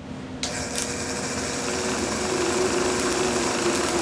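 Small sewing machine motor switching on about half a second in and driving a Van de Graaff generator's latex belt and rollers. It runs with a steady high-pitched whine that grows gradually louder as the belt comes up to speed.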